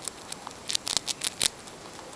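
Sound effect of a mouse nibbling a cracker, played back: quick, irregular crisp crunching clicks over a steady hiss.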